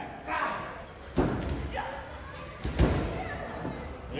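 Two heavy thuds on a lucha libre ring's floor about a second and a half apart, from wrestlers' bodies hitting the mat, with spectators shouting.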